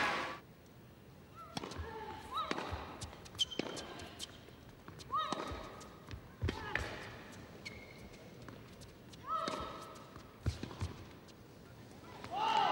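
A tennis rally on an indoor court: sharp hits of racket on ball about once a second or more, with short squeaks between them.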